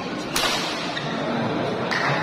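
A single sharp crack of a badminton racket striking the shuttlecock, about a third of a second in, over steady crowd noise in a large hall. Near the end the crowd noise swells.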